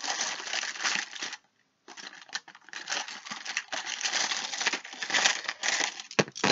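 A handful of small rune charms and stones being shaken and rattled together, a continuous clinking clatter with a brief pause about a second and a half in.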